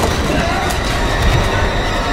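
Loud horror-film soundtrack: a dense grinding, screeching noise with wavering tones sliding up and down.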